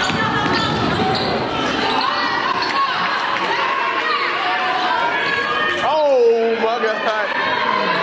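Basketball being dribbled on a hardwood gym floor during a game, under a steady mix of players' and spectators' voices, with one louder call about six seconds in.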